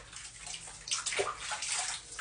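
Tap water running into a bathroom sink and splashing over a small dog as she is rinsed off by hand, in uneven surges that are loudest from about a second in.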